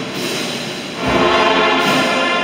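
Band music with brass instruments playing a slow processional hymn, swelling with fuller bass about a second in.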